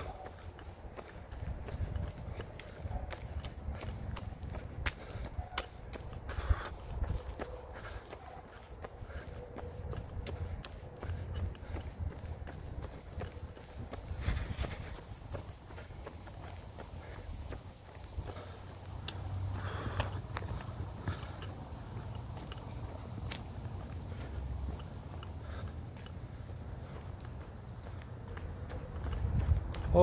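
A runner's footsteps on a park path, a steady series of light footfalls, over a low rumble.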